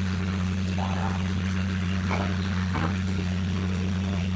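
Water spraying steadily from a handheld shower head onto a dog in a bathtub, an even hiss over a steady low hum.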